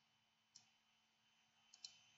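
Near silence, with a few faint computer mouse clicks: one about half a second in and a quick pair near the end.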